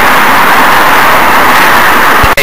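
Loud, steady rushing noise that overloads the microphone.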